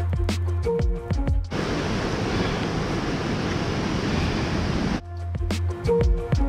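Background music with a steady bass line and plucked notes, which breaks off about a second and a half in for a steady rush of water like a creek or waterfall; the music comes back about a second before the end.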